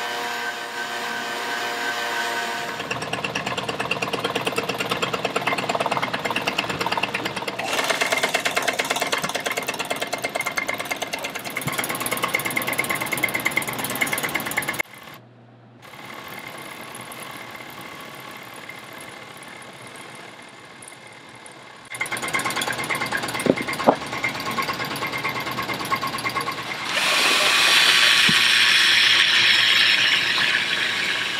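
Industrial sewing machine with a belt-driven motor: the motor hums steadily, then about three seconds in the needle starts a fast, even rattle that runs for about twelve seconds. After a sudden cut comes a quieter steady machine hum, then more machine noise with a couple of knocks, and near the end a louder buzzing hiss from a hand-held electric trimmer cutting mat fibres.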